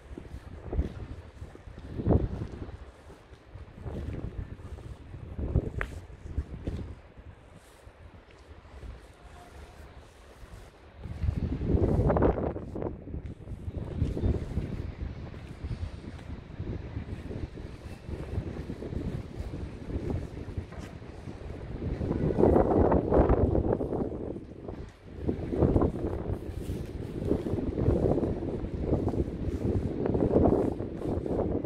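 Wind buffeting the microphone in uneven gusts: a low rumble that swells and fades, heaviest about eleven seconds in and again past the twenty-second mark.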